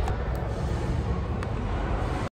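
A steady low rumble of background noise, with a couple of faint clicks.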